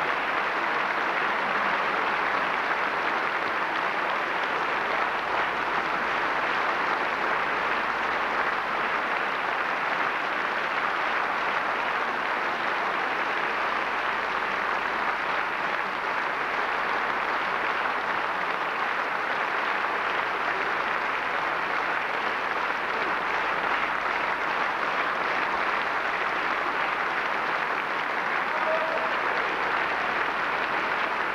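Steady applause from a large concert audience.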